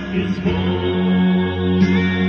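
Male gospel vocal group singing long held harmony notes over instrumental backing, the chord shifting about half a second in.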